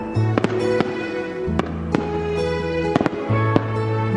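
Instrumental music: held chords over a steady bass, with sharp percussion hits about two to three times a second.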